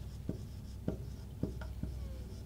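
Marker pen writing on a whiteboard: about five short, light strokes and taps as letters are written.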